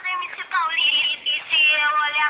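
A very high-pitched voice singing a funk song in short, gliding phrases, with thin, cut-off sound and little bass beneath it.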